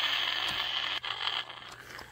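A harsh, rasping monster roar in toy-fight play, loud for about a second and a half and then trailing off quietly.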